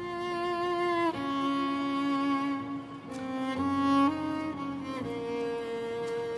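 Slow, sombre background music of bowed strings, violin over cello, holding long notes that change about once a second.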